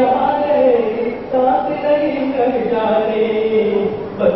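A young man singing solo into a microphone, long held notes that slide in pitch, with a brief break about a second in.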